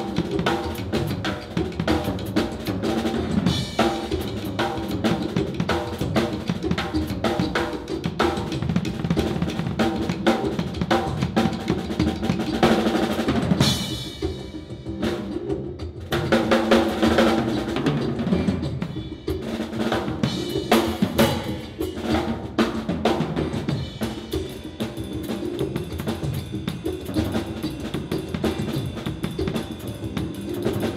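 Mapex drum kit played solo with sticks: fast, dense strokes on snare, toms, bass drum and cymbals over steady pitched tones. The playing thins out for a couple of seconds about halfway through, then builds again.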